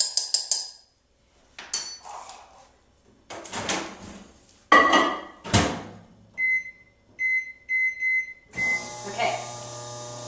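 A spoon clinking quickly against a ceramic mug, then clunks and a thud as the microwave oven's door is opened and shut. Five or six short keypad beeps follow, and the microwave starts up with a steady, noisy hum.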